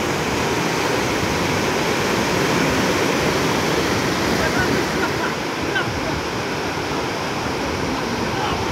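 Sea surf washing in and breaking over the shallows, a steady rush of waves, with people's voices faintly in the background.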